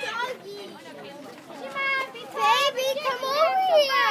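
Children's high voices shouting and calling out, rising to a loud burst from about two seconds in after a quieter start. The shouting is typical of young players cheering on a batter.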